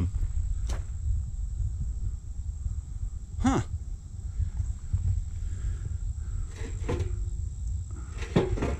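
A few separate knocks and clanks of rusty steel beams being handled in a scrap pile, the last followed by a brief ringing tone. Under them a low steady rumble and a thin steady high insect drone.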